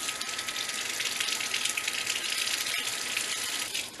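Kitchen tap running a steady stream of warm water over the bristles of a makeup foundation brush to wet it, with a thin steady whistle in the flow; the water stops shortly before the end.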